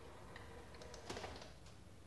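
Faint clicks and light knocks from a robot dog's motor-driven leg joints as it moves in a failed attempt to get up, with the loudest knock about a second in.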